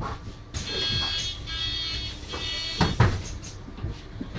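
Door warning buzzer of a MAN Lion's City Hybrid city bus sounding in a few pulses for about two seconds as the bus stops and opens its doors. Two sharp knocks follow close together about three seconds in, over the low rumble of the bus.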